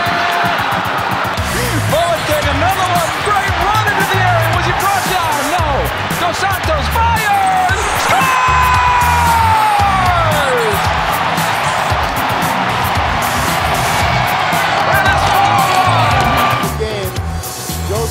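Background music with a steady beat and bending melodic lines; it drops away near the end.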